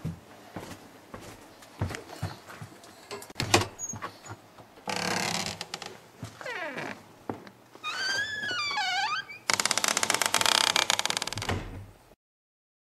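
Sound effects over an animated title: scattered knocks and clicks, a rush of noise about five seconds in, a warbling tone swooping up and down near eight seconds, then a loud crackling buzz for about two seconds that cuts off suddenly.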